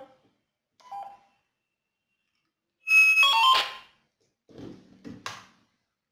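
Handheld two-way radios beeping: a short beep about a second in, then a louder sequence of stepped electronic tones around three seconds. Near the end comes a brief burst of static with a low hum and a click.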